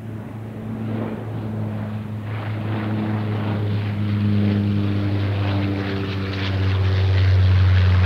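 Boeing 777-300ER's GE90 turbofan engines running at taxi power: a steady low drone with a few fainter higher tones, growing gradually louder.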